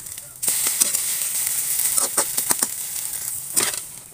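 Scrambled eggs with onion sizzling in oil in a metal wok, the sizzle growing louder about half a second in. A metal spatula scrapes and clinks against the pan a few times, around the middle and again near the end.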